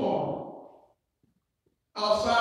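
A man's voice through a handheld microphone trails off and fades out within the first second, then near silence for about a second.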